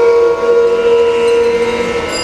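An elderly man wailing in grief: one long, high cry held at a steady pitch.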